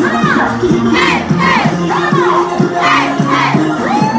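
Loud Zumba dance music with a steady beat and bass line. Over it, chanted shouts rise and fall in time with the beat, a couple each second.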